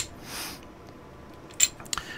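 A single sharp metal click about one and a half seconds in, from the steel bolt and operating rod of a Springfield M1A SOCOM-II being moved by hand in the receiver. A brief soft rush of noise comes just before it, near the start.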